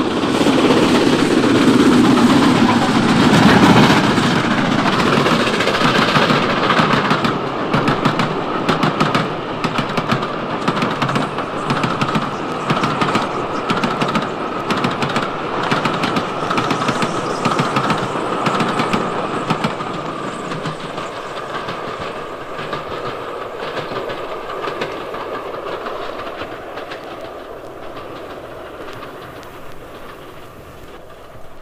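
Steam-hauled train passing at speed, its wheels clattering rapidly over the rail joints. It is loudest in the first few seconds and fades steadily as the train draws away, with a steady high ringing tone through the middle.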